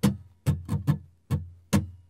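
Steel-string acoustic guitar, capoed at the second fret, strummed in a short strumming pattern: six strums, the first three close together, each left to ring and fade.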